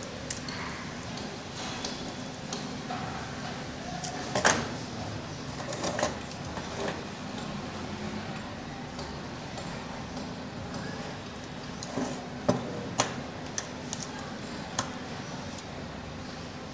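Plastic push-button switch units and a screwdriver being handled on a wooden bench while wiring: scattered clicks and knocks, the loudest about four seconds in and a few more close together near the twelve-second mark, over a steady low hum.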